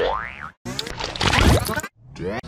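Heavily effects-processed, digitally distorted audio: a wobbly pitch glide that rises and falls like a boing, then after a short break a dense, garbled smear of warped sound that cuts off suddenly just before the end.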